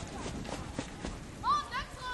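Distant high-pitched shouting voices: two or three short calls, rising and falling in pitch, about one and a half seconds in, over faint outdoor background noise.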